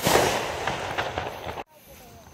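Aerial firework bursting: a loud noisy rush with a few sharp crackles, fading over about a second and a half, then the sound cuts off abruptly.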